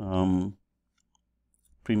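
A man's voice speaking briefly at the start and again just at the end, with a second or so of near silence between.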